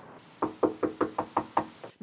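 Someone knocking on a front door by hand: a quick run of about ten knocks.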